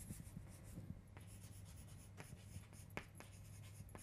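Chalk writing on a chalkboard, faint scratching with a few light taps of the chalk, over a low steady hum.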